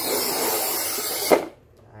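Scoring wheel of a manual push tile cutter being pushed in one even stroke across a glazed ceramic tile, scratching through the glaze with a steady gritty hiss for about a second and a half. The stroke ends in a sharp click.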